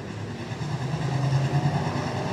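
USRA stock car V8 engines running steadily as the field circles the dirt oval, slowing under a caution.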